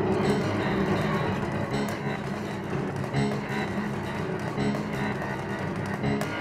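Grand piano played with the left hand on the keys and the right hand inside the instrument on the strings, giving a dense, repeated low pattern with a plucked, muted edge. A sharper accent comes about every second and a half.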